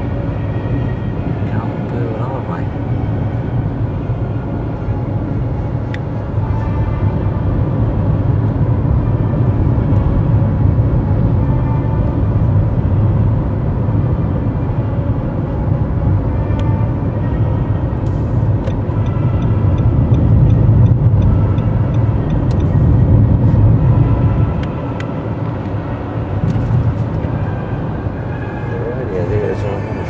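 Road and engine noise inside a moving car's cabin: a steady low rumble that grows louder through the middle and eases off about three-quarters of the way through. The car radio plays faintly underneath.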